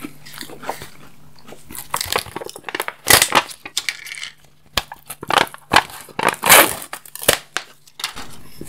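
Close-miked chewing and crunching of chocolate sweets, in irregular crackles and mouth clicks, with the loudest crunches about three seconds in and again past the middle.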